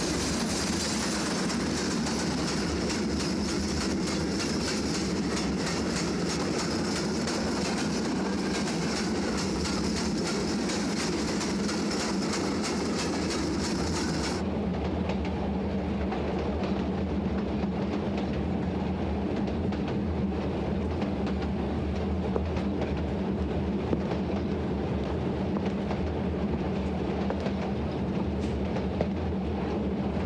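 A passenger train running steadily along the track, with the wheels clattering over the rail joints. About fourteen seconds in, the sound turns duller, heard from inside a carriage, and the rumble and clatter carry on.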